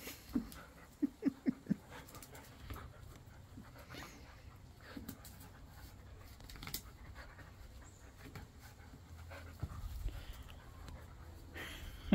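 Two dogs panting during a tug-of-war over a braided rope toy, with a quick run of short, low vocal sounds in the first two seconds.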